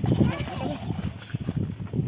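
Small plastic toy shovel scraping and scooping coarse beach sand, a quick run of gritty scrapes and taps that thins out in the second half.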